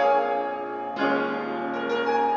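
Slow instrumental music on a keyboard: held chords, with a new chord struck about a second in.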